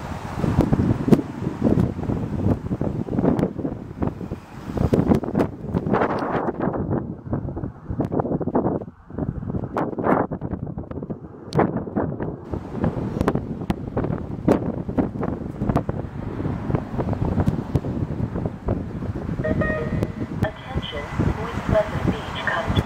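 Wind buffeting the microphone in irregular gusts, with indistinct voices in the background.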